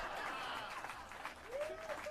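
Outdoor audience applauding, with a brief voice rising out of the clapping near the end.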